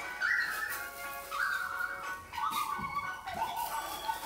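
Quiet background music: a slow melody stepping down over four long notes, about one a second, over a sustained backing.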